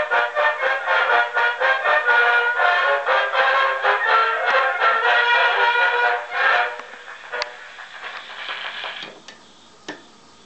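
A 1905 Edison two-minute black wax cylinder of a military band played through the horn of an Edison Model B Triumph phonograph. The music sounds thin, with no bass, and the medley's final bars end about two-thirds of the way through. After that come faint surface hiss and a few sharp clicks.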